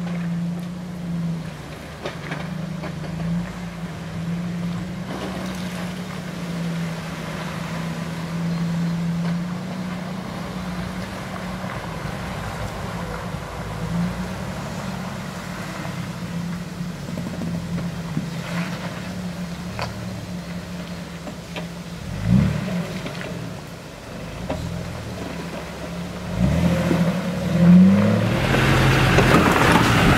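Jeep Wrangler engine running at low revs as the Jeep crawls over rock, with the revs rising briefly twice in the second half. Near the end a louder rushing noise comes in over the engine.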